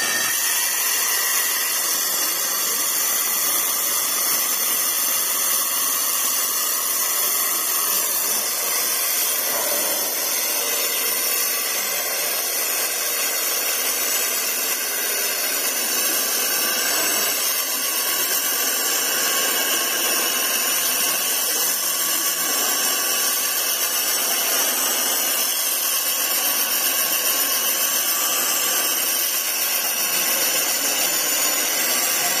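Stand-mounted electric diamond core drill boring wet into a concrete road slab, its motor and bit running steadily with a high-pitched grinding whine.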